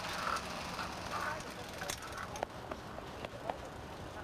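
Voices of people talking in the background, faint and indistinct, with several short sharp clicks in the second half.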